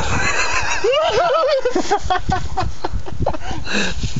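High-pitched, wavering human laughter and squeals, whinny-like, over a steady low rumble.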